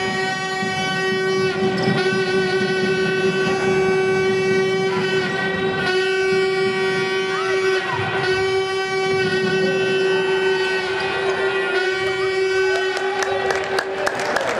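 A loud horn holds one steady note almost without pause, breaking off briefly a few times, over the sounds of a basketball game in a hall.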